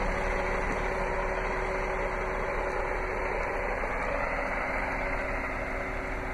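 A Jeep Cherokee's 3.2-litre Pentastar V6 idling: a steady hum with a faint constant whine.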